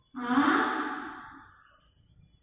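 A woman's long, breathy vocal sound like a sigh. It starts suddenly and fades away over about a second and a half.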